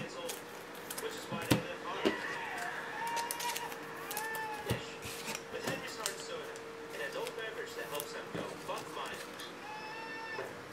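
Light handling sounds of trading cards and foil packs on a table: scattered soft clicks and taps, over a faint steady hum and a few faint voice-like sounds.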